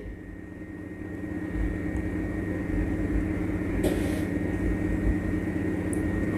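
A steady low droning hum with a faint thin high tone above it, swelling in over the first couple of seconds and then holding level.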